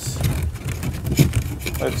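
The flash hider on a toy gel blaster's muzzle being gripped and twisted by hand, giving short clicks and scrapes over a steady low hum.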